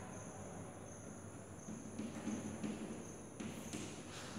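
Chalk scratching and tapping on a blackboard as a word is written, in short strokes, over a faint steady high-pitched whine.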